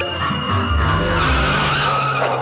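End-card sting over the animated logo: music with a sustained low note and a wavering, squeal-like tone.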